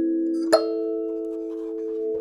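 Hokema Sansula, a thumb piano whose metal tines sit over a drum-skin frame, set on a djembe. Several plucked notes ring together, another tine is plucked about half a second in, and the chord rings on and slowly fades.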